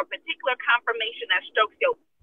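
A person talking steadily over a call line, with the thin, narrow sound of a telephone.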